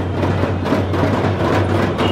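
Loud, dense drumming and music, with a steady low hum under it.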